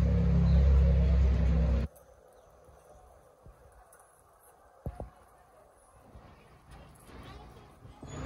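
A loud, steady low rumble that cuts off abruptly about two seconds in. Faint background follows, with a single sharp click about five seconds in.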